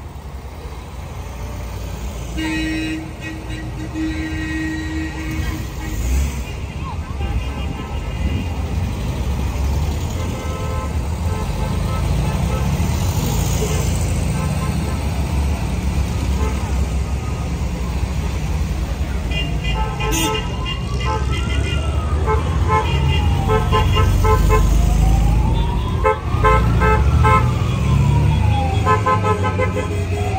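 Classic cars rolling past slowly with their engines running, and a couple of short car-horn toots a few seconds in. About two-thirds of the way through, a vehicle siren starts, wailing slowly up and down and getting louder toward the end.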